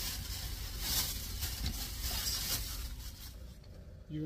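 Plastic food packaging being handled and opened: irregular crinkling and rustling that fades toward the end.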